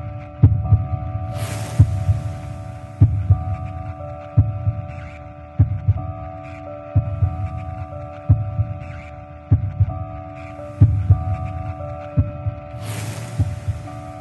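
Produced soundtrack bed: a steady held synthetic chord with a low thump about every 1.3 seconds. Two bright hissing swells come in, one a little over a second in and one near the end.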